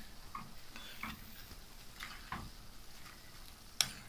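Metal spoon stirring and scraping minced chicken keema around a frying pan, with faint frying. There are several light scrapes and clicks, the sharpest a clink of the spoon near the end.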